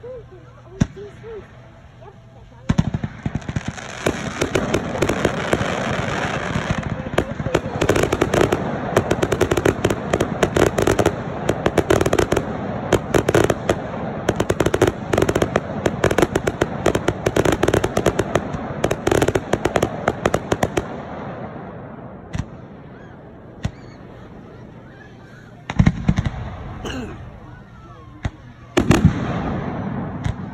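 Fireworks display: from about three seconds in, a dense, continuous barrage of rapid pops and bangs runs for over fifteen seconds, then thins out, with a few single loud bangs near the end.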